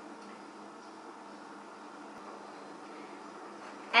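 Quiet, steady room tone: a faint even hiss with a low hum.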